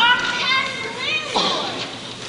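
Children's high-pitched voices calling out without clear words: a burst of short cries at the start, then a cry that falls sharply in pitch about a second and a half in.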